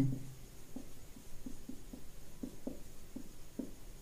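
Marker pen writing on a whiteboard: a quick irregular series of short, faint squeaks as the strokes of each letter are drawn.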